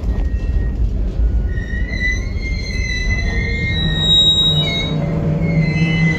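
Freight train's covered hopper cars rolling past close by: a steady low rumble of steel wheels on rail, with a high, steady wheel squeal setting in about a second and a half in and holding.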